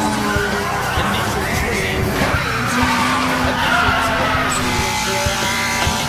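Racing-car engines and tyre squeal from an anime street-racing scene, over dance music with a steady beat.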